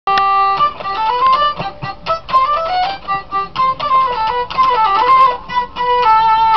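Hurdy-gurdy played with the wheel turning: a quick melody of short, stepping notes on the keyed melody strings, which sound together in octaves.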